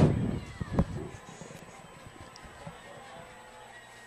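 Faint open-air ambience of a football game, with one short shout or call just under a second in while the players are set at the line before the snap.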